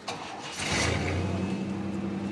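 A vintage panel delivery truck's engine starting: a short burst about half a second in, then a steady idle.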